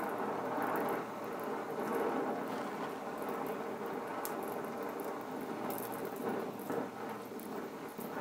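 Gas welding torch at work: a steady hiss with faint scattered crackles and a low hum underneath.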